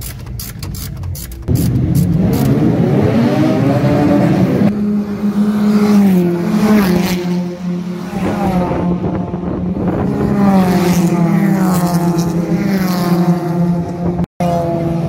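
Race car engines running hard on a circuit, the engine note climbing and then stepping down several times, as with gear changes, while cars come down the straight. The first second and a half is a rapid ticking, before the engine sound starts abruptly.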